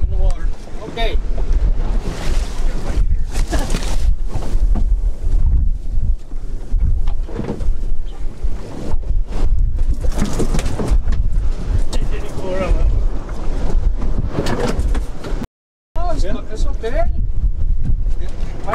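Wind rumbling and buffeting on the microphone in gusts aboard a small open fishing boat, with short stretches of indistinct voices.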